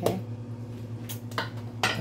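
A metal ladle clinking against a cooking pot: three sharp clinks, one at the start, one about a second and a half in and one near the end, over a steady low hum.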